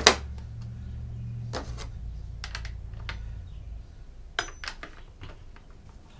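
Scattered light clicks and clacks of a chainsaw's parts and tools being handled on a wooden bench: one sharp clack at the start, then a few quieter knocks and a quick run of clicks a little after the middle. Under them a low hum fades out after a few seconds.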